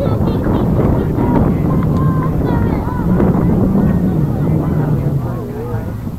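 Wind buffeting the microphone with a heavy low rumble, under distant shouts and calls from players and spectators on the field.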